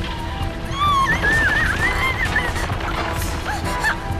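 Cartoon score music with a cartoon squirrel's high, squeaky chattering over it, wavering up and down in pitch.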